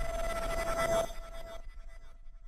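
Tail of a logo intro sound effect: a ringing electronic tone with a few overtones that drops away sharply about a second in, then fades out.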